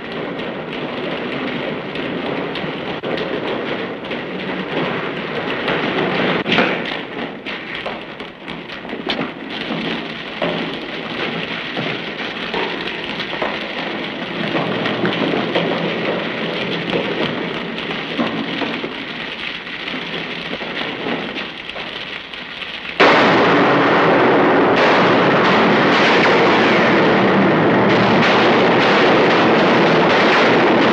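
Water rushing through a concrete storm drain, echoing, with scattered knocks and splashes. About three-quarters of the way in, it jumps suddenly to a much louder, steady rush.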